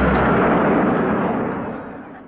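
Military jet aircraft engine noise, a loud steady rush that fades away over the second half.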